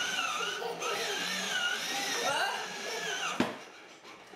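A toddler's high-pitched, wavering squeals and vocal sounds, with one sharp knock near the end.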